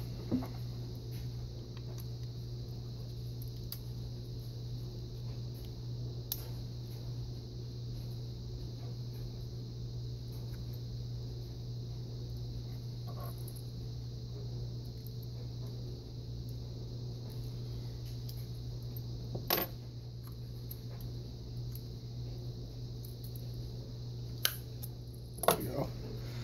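Small screwdrivers clicking against a model locomotive's pressed-on plastic shell as it is pried loose, a few sharp clicks spread out, the loudest a little past the middle and two close together near the end. A steady low hum runs underneath.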